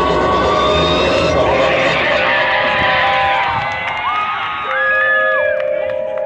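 Marching band playing long held wind notes that step up in pitch a few times in the second half. Crowd noise and cheering lie under the band for the first three seconds or so, then fade.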